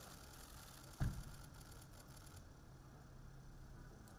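A car door slammed shut: one heavy thump about a second in, over a faint low steady hum.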